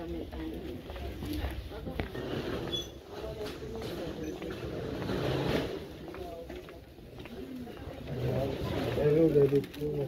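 Indistinct voices of passers-by and vendors in a busy underground pedestrian passage, over a low crowd din.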